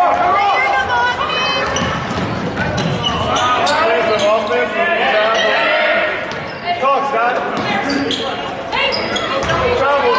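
A basketball being dribbled on a hardwood gym floor, with voices calling out over it, echoing in a large gymnasium.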